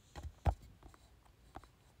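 A few soft taps and knocks of handling close to the microphone, the loudest about half a second in.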